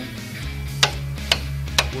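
Hammer striking a steel wheel three times, about half a second apart, to knock loose a wheel stuck on the hub, over background music.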